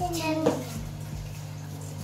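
A child's short voiced sound in the first half second, with a light knock about half a second in, over a steady low hum.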